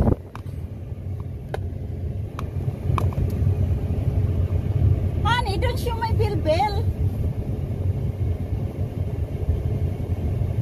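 Steady low rumble of a pickup truck being driven, heard from inside the cab, with a few faint clicks in the first few seconds. A brief stretch of voice rises over it about five seconds in.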